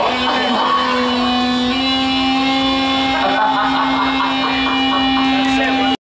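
A steady held electronic tone from the club's sound system, stepping slightly up in pitch about two seconds in, with crowd voices and shouts over it. It cuts off abruptly at the very end.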